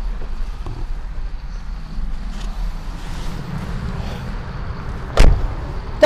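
A Nissan Navara ute's door shutting with a single loud thump about five seconds in, over a low, steady rumble.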